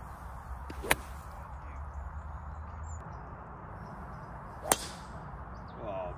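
Two sharp cracks of a golf driver striking a golf ball off the tee, one about a second in and another nearly four seconds later.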